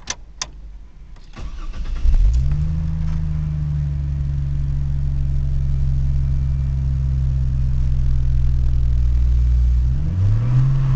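Car engine starting with its newly installed Volant cold-air intake. After a couple of clicks, the starter cranks briefly and the engine catches about two seconds in, revs up a little, then settles into a steady idle.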